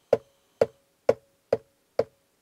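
Steady finger taps on the hollow case of an IKEA FREKVENS LED light box, about two a second, each a short knock with a brief ring. Each tap is picked up by the box's built-in microphone and steps its preset animation on by one frame.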